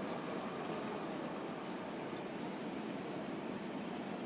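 Steady, even background noise of street ambience, with no distinct events.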